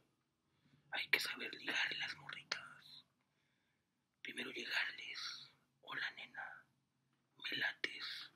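A man whispering in short phrases with brief pauses between them.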